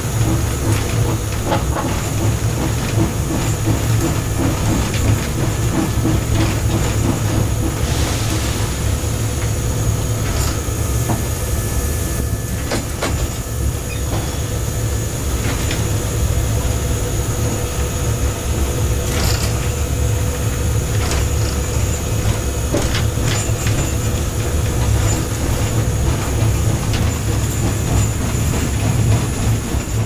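Cab noise of class 52 steam locomotive 52 4867, a two-cylinder 2-10-0, under way: a steady heavy rumble with steam and rail noise, a few steady whining tones, and scattered knocks and clanks.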